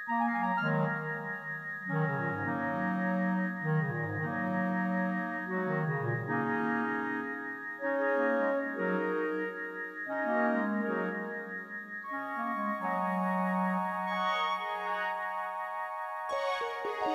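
Solo keyboard music with an organ-like tone: slow, sustained chords that change every second or so, settling into a long held chord in the last few seconds.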